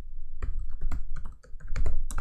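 Typing on a computer keyboard: a quick run of key clicks with a short pause about one and a half seconds in.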